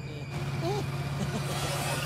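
Steady low drone of a car driving along, with a short wavering tone a little under a second in.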